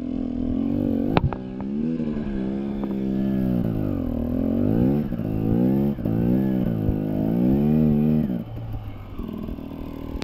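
Dirt bike engine revving up and down over and over, about once a second, as the bike is worked up a steep slope, with a few sharp knocks near the start. The revving eases off near the end.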